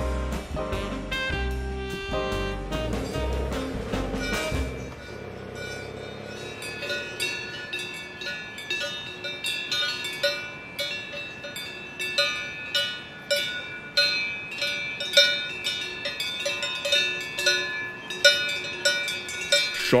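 Jazz music with saxophone fades out about five seconds in. After that comes the irregular clanking of several cowbells worn by grazing cows, one or two strikes a second, each ringing on at its own pitch.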